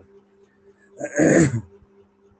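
A single short, rough vocal sound about a second in, over a steady low hum.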